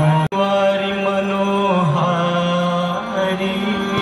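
Devotional Hindu chant sung with long, steady held notes over music. The sound cuts out for an instant just after the start.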